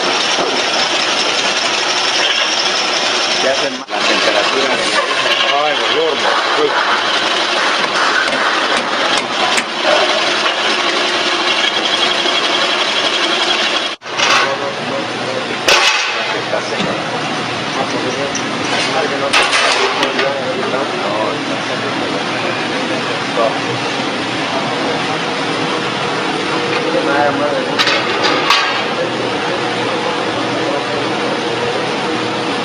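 Hydraulic oil press running with a steady mechanical noise as it builds pressure, under indistinct talk. The sound drops out briefly twice, about four and fourteen seconds in.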